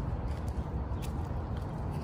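Steady low outdoor background rumble, with a few faint ticks of footsteps on a concrete path.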